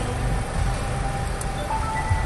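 Steady outdoor background noise with a low rumble, and faint music in the distance; a held note comes in near the end.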